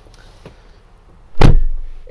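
A 2018 Jeep Wrangler JL's driver's door being shut from inside the cabin: a single heavy thud about one and a half seconds in.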